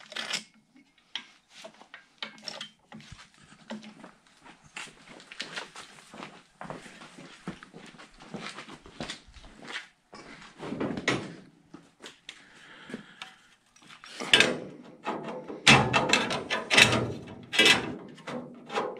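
Hand-lever metal stretcher clacking irregularly as its handle is worked to stretch a steel patch strip into a gentle curve. Near the end, a louder run of metal knocks and clatter as the sheet-metal piece is handled against the truck cab.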